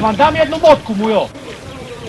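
Men's raised voices shouting short words for about the first second, then a lower, even background.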